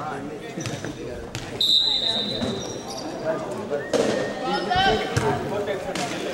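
A referee's whistle blown once, a steady high tone lasting under a second, about a second and a half in, signalling the serve. A volleyball is bounced on the hardwood gym floor by the server.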